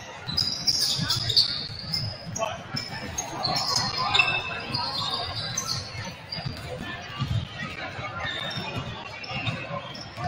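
Several basketballs being dribbled and bounced on a hardwood gym floor, many overlapping thumps at irregular spacing, with short high sneaker squeaks and voices chattering in the background.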